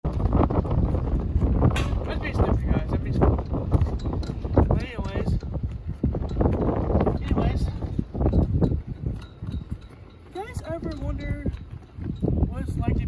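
Wind gusting against a phone microphone, a heavy rumbling buffet that rises and falls, with bits of a person's voice over it. About ten seconds in a wavering, voice-like call rises and falls over a quieter stretch.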